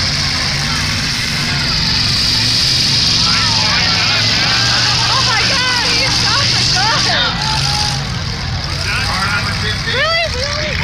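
Engines of several demolition derby cars running together in a steady drone, with shouting voices rising over it through the middle of the stretch.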